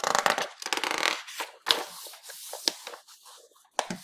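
A page of a large softcover piano lesson book being turned by hand. There is a loud paper rustle in the first second or so, then softer rubbing of paper and a few light ticks as the new page is smoothed flat.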